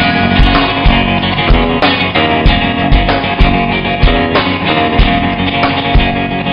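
Live rock band playing: electric guitar, bass guitar and drum kit together, with the kick drum keeping a steady beat about twice a second.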